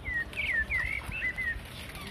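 A bird calling: a quick run of short high chirps, several falling in pitch, lasting about a second and a half.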